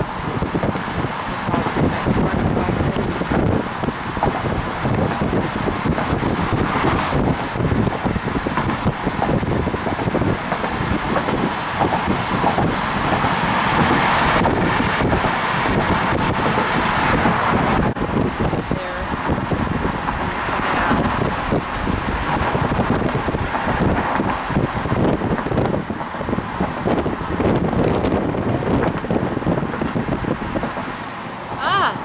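Wind buffeting the microphone over steady road noise from a car driving at speed.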